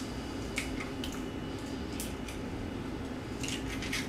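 Eggshell being pulled apart by hand over a bowl of flour, the egg dropping into the bowl, with a few faint crackles and clicks of shell.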